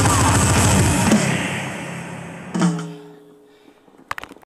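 Heavy metal song with drums played along on an electronic drum kit, thinning out and fading about a second in. A last hit about two and a half seconds in leaves a sustained chord ringing out and dying away.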